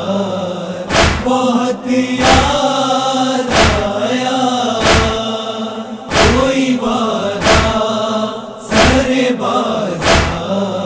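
Nauha lament: voices chanting a long, drawn-out line together, with a heavy thump about every 1.3 seconds keeping the matam (chest-beating) beat.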